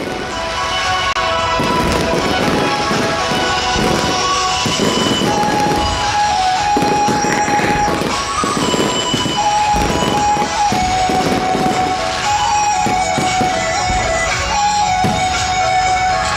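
Fireworks bursting and crackling in quick, dense succession, heard together with music that has long held notes.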